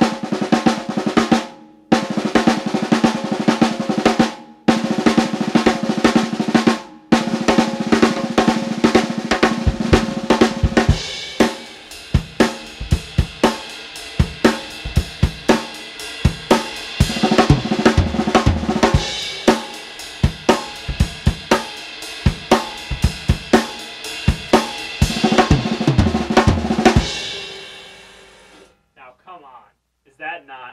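Six-stroke roll (accented right, two lefts, two rights, accented left) played fast on a snare drum, in repeated phrases with short breaks in the first several seconds. From about 11 seconds in, cymbals and bass drum join as the pattern is played around the drum kit, and the kit rings out near the end.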